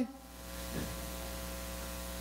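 Steady electrical mains hum from the amplified sound system: a low buzz with a ladder of even overtones that settles in during the first half second.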